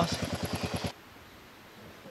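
Kawasaki KLR650's single-cylinder four-stroke engine idling with an even, rapid beat, cutting off abruptly about a second in; faint outdoor ambience follows.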